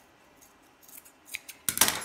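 Scissors cutting through a sock. A couple of light snips come about a second in, then a quick run of louder cuts comes near the end.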